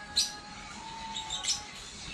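Background music playing under the video, with two short high chirps, one just after the start and one about three quarters of the way through.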